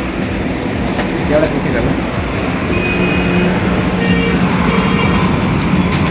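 Road traffic noise, with a vehicle engine running close by and a low steady hum in the second half.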